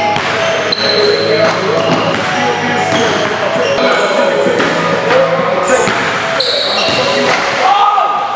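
A basketball bouncing on a hardwood gym floor, several sharp bounces, over continuous chatter of voices.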